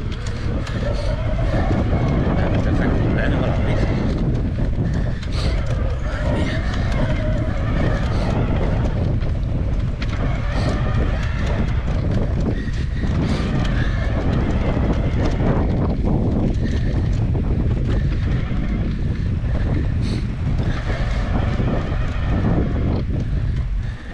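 Mountain bike ridden over a sandy dirt trail, heard from a handlebar-mounted camera: steady wind buffeting on the microphone and tyre rumble, with frequent knocks and rattles as the bike goes over bumps.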